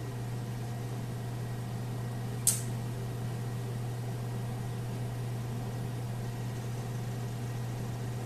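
Steady low hum with faint hiss, and a single short click about two and a half seconds in.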